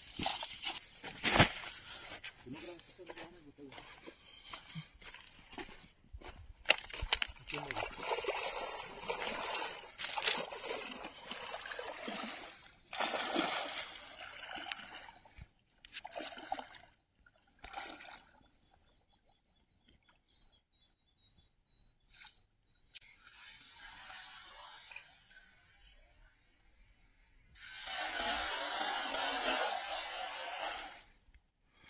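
Water sloshing and splashing as a man wades into a shallow creek, then a cast net coming down on the water with a spread-out splash near the end.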